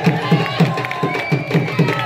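Music with a steady drum beat of about four to five strokes a second, over a crowd cheering and voices.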